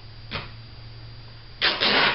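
Cotton fabric being torn by hand to remove the excess strip: a brief rasp soon after the start, then a louder rip lasting about half a second near the end.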